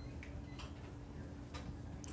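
Faint, irregular ticks of a stylus tapping on a tablet screen while handwriting, over a low steady hum.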